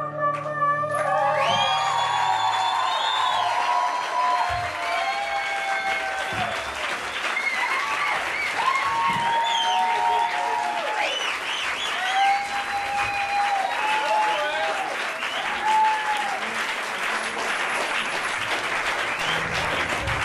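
The last held chord of a song dies away about a second in, and the live audience breaks into applause with cheers and whoops. The cheering thins out near the end while the clapping goes on.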